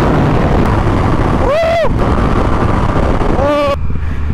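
A 2017 Yamaha FZ-09, an inline three-cylinder, running at highway speed, heavily overlaid by the rush of wind on the camera microphone. A short shout rises and falls in pitch about one and a half seconds in, and another brief vocal sound comes near the end.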